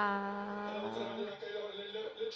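A single steady held note with many overtones, heard through the TV's sound of a soccer broadcast. It starts suddenly and fades over about a second and a half, then lingers faintly.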